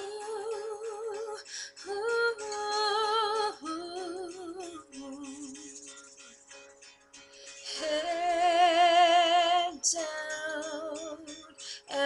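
A woman singing wordless "ooh" vocal runs with vibrato, in phrases broken by short pauses; the longest and loudest held passage comes about eight seconds in.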